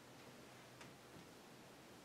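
Near silence: meeting-room tone with a faint steady hiss and one faint click a little under a second in.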